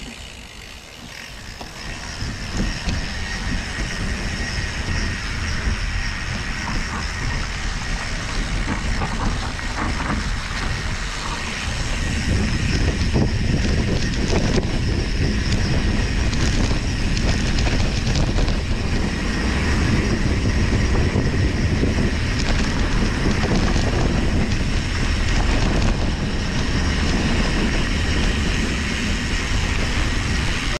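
Wind buffeting the microphone and mountain-bike tyres rolling over a dirt trail, with small rattles and knocks from the bike over the bumps. The rumble grows louder about twelve seconds in.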